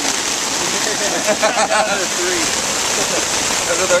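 Heavy rain falling steadily in a storm and hitting a tarp overhead: a dense, even hiss.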